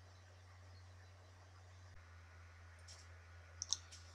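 Near silence with a faint steady low hum. A few light clicks come near the end, two of them close together, from hands handling paper and art supplies on the worktable.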